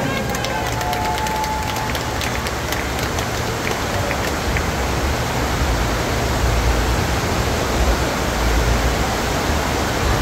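Steady rush of water from a FlowRider double sheet-wave surf machine, its pumped sheet of water pouring up the wave surface, with a low rumble underneath.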